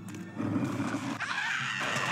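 Film soundtrack music with cartoon chickens squawking over it in rising and falling cries.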